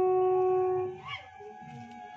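A ritual horn blown in one long, steady note that stops about a second in, leaving a lower crowd murmur.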